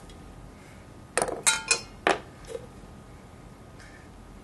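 Steel tin can and an all-metal tactical pen being handled and set down, giving sharp metallic clinks and knocks. A quick cluster of clinks comes about a second in, another about two seconds in and a faint tick near the end.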